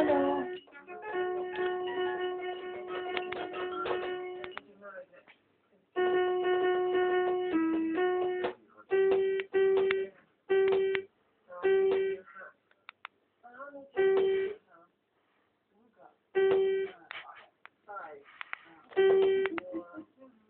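Children's electronic learning toy sounding synthesized keyboard notes as its buttons are pressed. First come two long held notes, then a string of short single notes, all at the same pitch.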